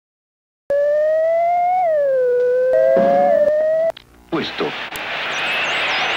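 A steady electronic tone that drifts gently up and down in pitch and cuts off about four seconds in. After a brief drop it gives way to a loud hiss of analog television static with faint wavering whistles over it.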